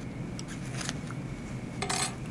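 Soft scratching of a pencil marking fabric, a few short strokes, then a brief rustle of the fabric being handled near the end.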